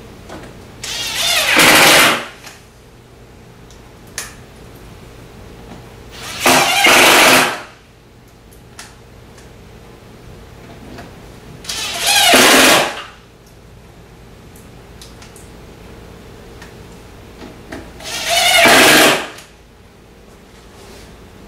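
Cordless power driver running in four short bursts, about a second or so each and several seconds apart, as it drives screws into the wooden cabinet.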